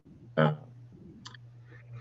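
A man's hesitant spoken "uh" over a steady low hum on the call audio, with a brief faint click about a second in.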